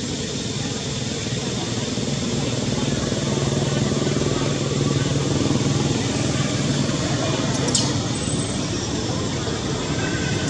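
A vehicle engine running, a low steady hum that swells in the middle and then eases, over a steady background hiss; a brief sharp click near eight seconds in.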